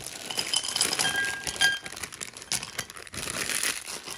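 Dark chocolate buttons pouring from a plastic bag into a glass bowl: a busy patter of clinks against the glass, some with a short ring, and the bag crinkling.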